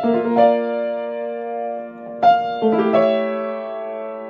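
Piano played slowly: chords struck near the start and again a little past halfway, each left to ring on.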